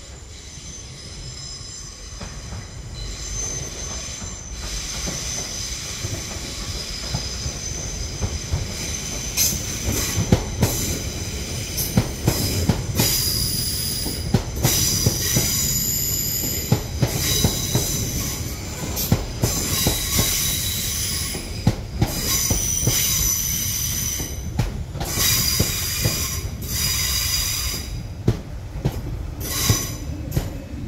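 London Northwestern Railway Class 350 electric multiple unit running alongside the platform, its wheels squealing in several high, shifting tones with sharp clicks and a low rumble underneath, growing louder as it draws close.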